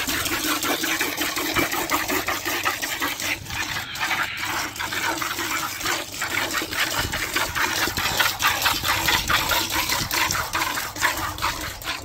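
A cow being milked by hand: rhythmic squirts of milk from the teat splash into frothy milk in an enamel bucket.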